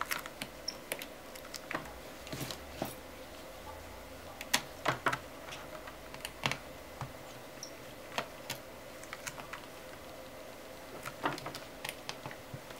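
Scattered light clicks and taps of a small screwdriver working the screws out of an LCD panel's interface circuit board and metal frame, at an irregular pace.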